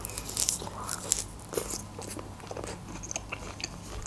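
A person biting into a large orange wedge and chewing it: a scattered run of short, wet biting and chewing clicks.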